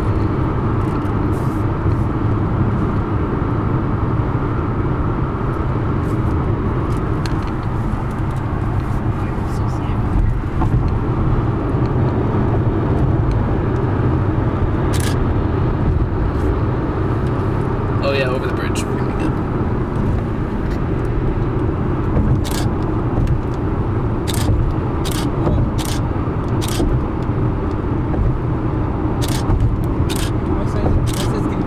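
Steady road and engine rumble inside a moving car's cabin, with scattered light clicks and a brief wavering pitched sound about halfway through.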